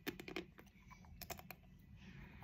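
Lindt dark chocolate square being bitten and crunched between the teeth: a quick run of sharp, crisp snaps at the start, then another cluster about a second in.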